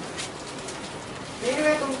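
A pause filled with low steady room noise, then a man's voice starting to speak in Hindi about one and a half seconds in.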